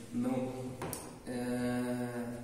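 A man's voice drawing out two long, level-pitched vocal sounds, the first about half a second long and the second from a little past the middle on, like hesitation drawls between sentences rather than clear words.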